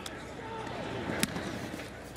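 Steady stadium crowd noise with faint voices, and a single sharp thump just past a second in as the football is punted.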